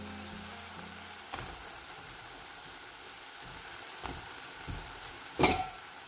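Tomato, onion and pea masala sizzling steadily in a pan, with a couple of light clicks and one louder knock near the end.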